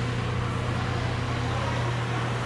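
Fire engine's diesel engine running steadily close by, an even low rumble as the truck maneuvers to back into the station.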